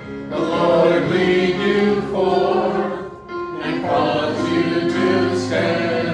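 A choir singing sustained phrases, with a brief break about three seconds in.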